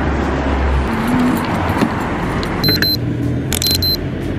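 Steady city street traffic noise with a low rumble in the first second. In the second half come three groups of short, high-pitched electronic beeps.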